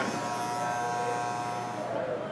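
Oster electric barber clipper running with a steady, even buzz while trimming hair at the temple.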